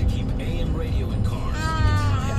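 Steady road rumble inside a moving car's cabin. About one and a half seconds in, a high, wavering cry-like tone rises over it.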